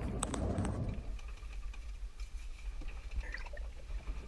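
Low steady rumble of wind and sea around a small sailboat's cabin in a gale, with a sharp click about a quarter second in and a few faint clicks later.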